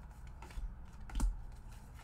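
Tarot cards being dealt and laid down on a table: a few light taps, the sharpest about a second in.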